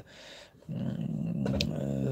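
A man's drawn-out, low, steady hesitation hum, starting a little under a second in and held for over a second, as he gropes for a word he can't recall.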